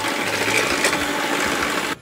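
Electric hand mixer running steadily, its beaters whisking egg yolks and sugar in a wooden bowl to beat them foamy; the sound cuts off suddenly just before the end.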